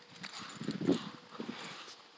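Irregular soft thumps and rustling from a hand-held phone being moved about as the person holding it walks; no siren is sounding.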